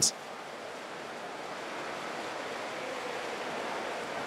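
A steady rushing noise with no pitch or rhythm, growing slightly louder.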